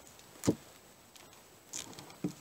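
A pocket knife cutting the tape that binds a stack of 2x4 boards: one sharp click about half a second in, then a faint brief scrape near the end.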